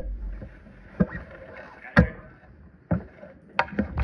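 Handling noise on the recording device: rubbing against the microphone and a few knocks about a second apart, as the phone or camera is covered and moved.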